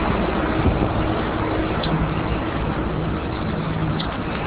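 Steady noise of a busy city street, with traffic running and a faint low engine hum.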